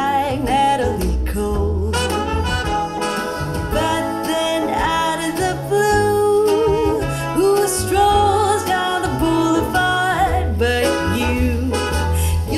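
A song with a sung vocal over guitar and a strong, steady bass line, played back through home-built hi-fi speakers: a centre channel speaker with front left and right speakers and a small subwoofer, heard through a microphone in the room.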